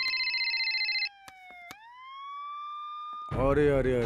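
Electronic soundtrack tones: a fast, trilling warble stops about a second in, while a held tone slides steadily down, then glides back up and holds. A man's voice comes in near the end.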